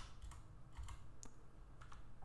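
Computer keyboard keystrokes: several faint, separate taps while a number is typed in.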